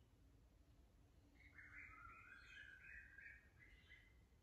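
Near silence: room tone, with a faint bird call starting about a second and a half in and lasting until near the end.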